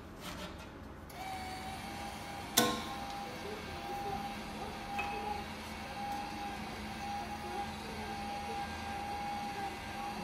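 Hotel self check-in kiosk at work while it issues the room key and change: a sharp clack a couple of seconds in, and a steady electronic tone held through most of the rest, with faint music under it.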